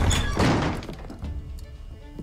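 A heavy thud from the TV drama's soundtrack in the first half-second, then quiet background music.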